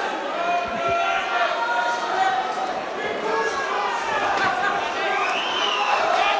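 Crowd of boxing spectators shouting and calling out, many voices overlapping at a fairly steady level.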